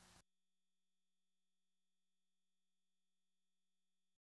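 Near silence: the sound of the preceding ad fades out within the first moment, leaving dead air.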